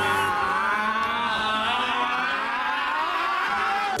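A break in a bass-boosted hip-hop track: the beat and bass drop out, leaving a quieter layer of wavering, overlapping vocal or melodic sounds. The heavy bass beat crashes back in right at the end.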